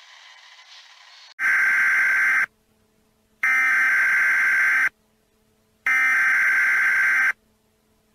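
Emergency Alert System-style data header: three loud, harsh electronic screeching bursts, each about a second long and about a second apart, after a faint hiss.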